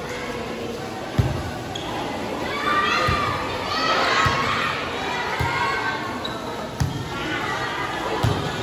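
A volleyball being struck during a rally: a series of dull thuds one to one and a half seconds apart, the loudest about a second in. Young voices call out in the middle of the rally.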